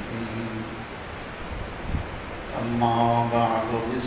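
A man chanting a mournful Muharram recitation (masaib) in long, held notes, with a quieter gap of about two seconds in the middle.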